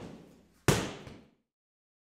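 A single sharp impact a little under a second in, the loudest sound here, ringing out briefly, after a softer sound at the start.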